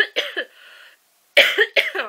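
A woman's coughing fit into her hand from a bad cold and sore throat: three quick coughs at the start, a breath drawn in, then another three about a second and a half in.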